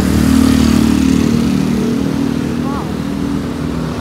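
A motorcycle engine running steadily close by in street traffic, easing off slightly toward the end.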